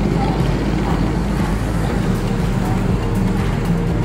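Road traffic: motorcycles and a small pickup truck passing on a town street, their engines making a steady low rumble.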